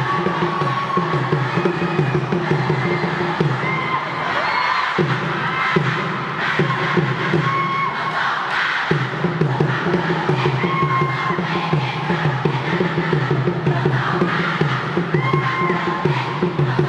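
A large group of students chanting and shouting a cheer together to a steady rhythmic beat, with short held calls rising above the group.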